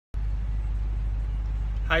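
Steady low hum of a car idling, heard from inside the cabin. A man's voice starts just at the end.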